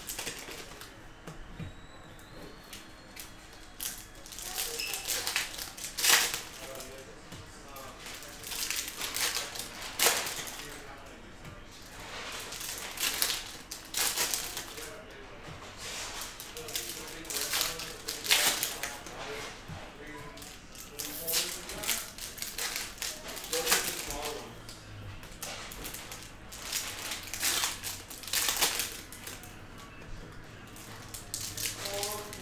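Foil trading-card pack wrappers crinkling and stacks of cards being handled and tapped on a table mat, in short irregular rustles and taps.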